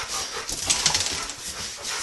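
Dogs scuffling in play at close range, with noisy breathing and a flurry of small clicks and rustles about half a second in.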